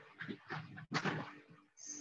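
A man's soft, hesitant murmurs and breaths in a pause within a sentence: several short, quiet bursts, quieter than the speech around them.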